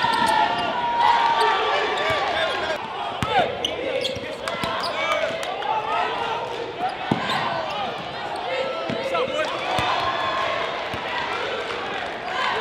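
Live basketball game in a gym: the ball bouncing on the hardwood court and sneakers squeaking in many short chirps, over a constant murmur of crowd and player voices.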